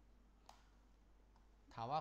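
Quiet room tone with a single short, sharp click about half a second in; a man's voice begins near the end.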